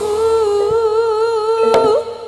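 A singer holds one long note with a slight waver in a Javanese jaranan song, with a single drum stroke near the end.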